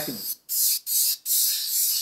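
Paasche Millennium bottom-feed airbrush spraying paint: a hiss of air through the gun that stops briefly three times as the trigger is let off and pressed again.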